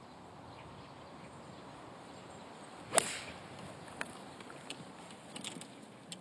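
A 5-iron striking a golf ball from the tee: one sharp, crisp crack about three seconds in, over a faint steady outdoor background.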